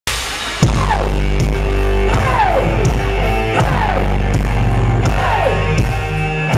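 Live rock band playing loudly: electric guitars, bass and drums. The band comes in hard with a hit about half a second in, and a falling sweep recurs about every one and a half seconds over a heavy, steady low end.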